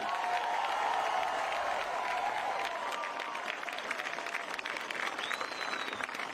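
Crowd applauding and cheering, loudest in the first couple of seconds and slowly easing off. A brief high call rises and falls near the end.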